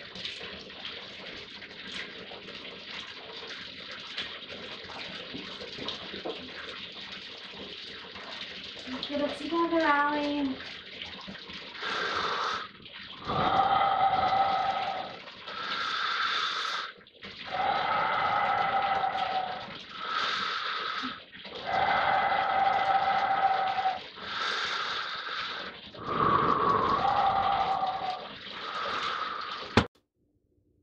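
Water running at a bathroom sink. From about twelve seconds in it comes as a series of louder surges, each a second or two long, with a whistling tone.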